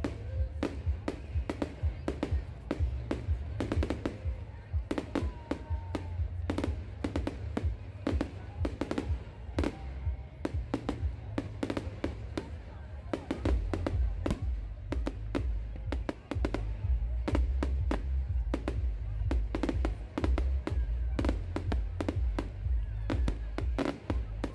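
Fireworks going off in a dense, irregular barrage of sharp bangs and crackles, several a second, with music and some voices underneath.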